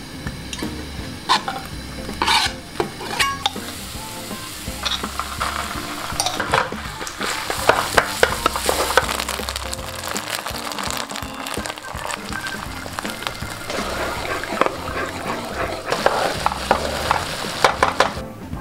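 A cream-and-mustard sauce cooking in a non-stick frying pan: a few sharp clicks at the start, then sizzling and crackling from the pan that grows denser from about four seconds in, with a wooden spatula stirring and scraping.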